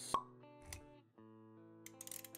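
Intro music with held notes, cut by a sharp pop just after the start and a softer low thud a little before the middle, the sound effects of an animated title sequence. Quick light clicks begin near the end.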